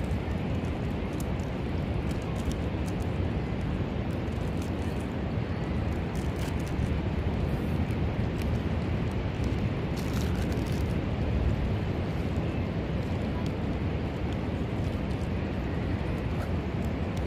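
Wind on the microphone: a steady low rumble.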